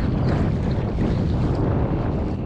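Wind buffeting a first-person camera's microphone in a steady, gusty rumble, with water lapping around the kiter.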